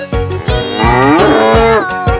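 A cow mooing once, one drawn-out moo starting about half a second in and lasting just over a second, over the backing music of a children's song.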